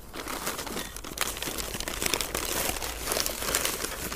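Paper seed packets and brown paper bags rustling and crinkling continuously as hands rummage through a cloth bag, a dense stream of small crackles.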